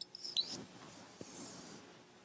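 Felt-tip marker squeaking on a whiteboard as figures are written, a few short high-pitched squeaks in the first half second, then fainter strokes.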